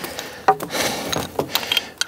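Rubber garden hose rubbing and scraping against wooden fence boards as it is pulled up and draped, with a few sharp clicks and knocks.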